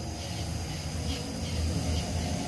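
Bounce house inflation blower running with a steady low hum.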